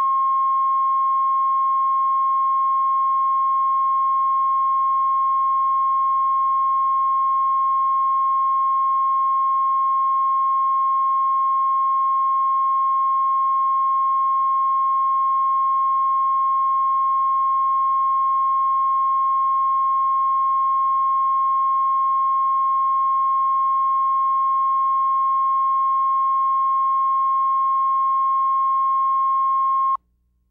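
Steady line-up test tone of about 1 kHz, the reference tone recorded with SMPTE colour bars on a videotape. One unchanging pitch that starts and stops abruptly.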